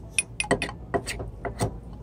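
Spoons clinking and scraping against a glass cup and a steel tumbler while stirring a thick flour-and-water paste: a quick irregular run of light clinks, about eight in two seconds.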